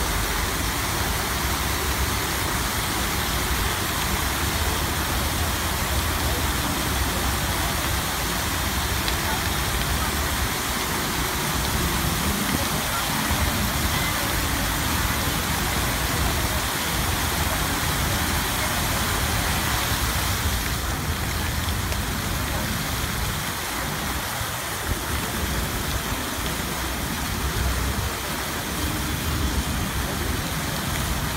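Fountain water jets spraying and falling back into the pool: a steady rushing hiss, easing a little about two-thirds of the way through as the jet pattern changes.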